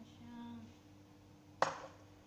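A single sharp knock about one and a half seconds in, with a brief ring: a mixing bowl set down on a granite countertop.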